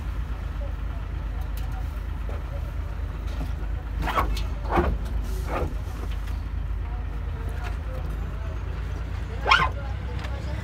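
A steady low motor rumble, with four short pitched calls over it about four to five and a half seconds in and again near the end, the last the loudest.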